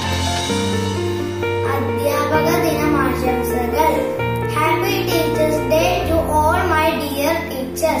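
A young boy singing over an instrumental backing track of long held bass notes that change every second or two.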